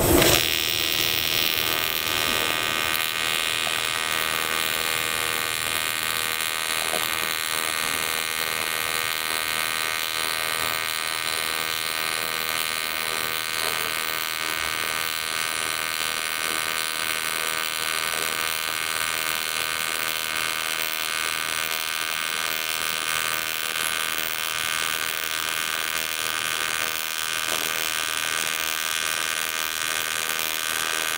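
AC TIG welding arc on quarter-inch aluminum with pure helium shielding, from a Lincoln Aspect 375: a steady electrical buzz made of many evenly spaced tones. The arc is struck right at the start and held at an even level while the bead is laid.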